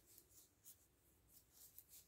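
Faint, irregular scratchy rustling of yarn sliding over thin metal knitting needles as stitches are worked by hand, a few strokes a second.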